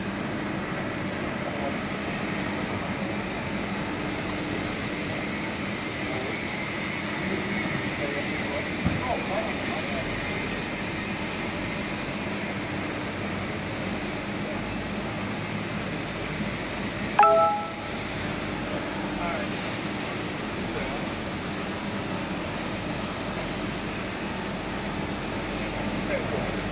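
Steady machinery hum in a factory hall. About two-thirds of the way through, a short, loud ringing tone sounds once.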